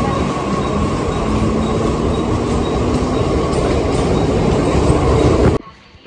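Mumbai suburban local electric train at a station platform, a loud steady rail rumble with a faint held whine in the middle. The sound cuts off abruptly about five and a half seconds in.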